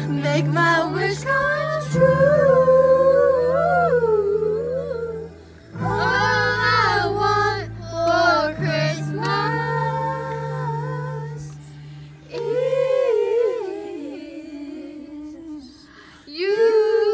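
Female voices singing a Christmas song, the melody sliding and bending, over sustained low bass notes that change every few seconds.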